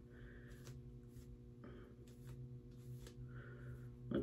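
Very quiet: faint, brief rustles of synthetic wig hair being handled and parted by hand, several times, over a low steady hum.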